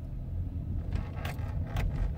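Car cabin noise while the car creeps forward at low speed: a steady low engine and road rumble, with a few light clicks or rattles about a second in.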